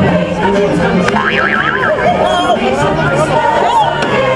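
Parade music playing over a crowd of spectators talking, with a brief high warbling tone about a second in.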